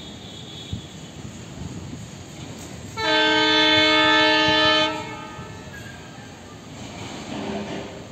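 Indian Railways locomotive horn sounding one long blast of about two seconds, starting about three seconds in, as the train approaches. Under it is the faint rumble of the oncoming train.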